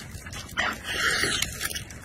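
Close-miked wet, sticky eating sounds: mouth noises and a sauce-glazed sausage handled in plastic-gloved hands and raised to the mouth, loudest in the middle.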